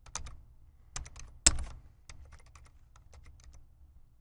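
Computer keyboard being typed on: about a dozen separate keystrokes in irregular groups, typing out a two-word phrase. One key strike about a second and a half in is louder than the rest.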